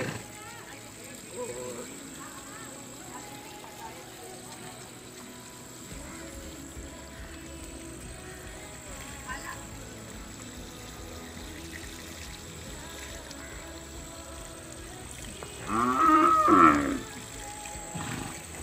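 Faint steady background, then a single loud cow moo lasting about a second near the end.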